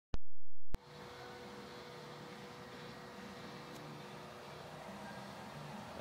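A brief loud burst between two clicks in the first second, then a steady hum with faint constant tones: an electric pump running unloaded off a 750-watt power inverter, drawing about 284 watts from the battery bank.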